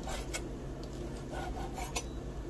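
Kitchen knife slicing raw lamb liver on a wooden cutting board: the blade scrapes and taps on the board in short strokes, at the start and again in the second half.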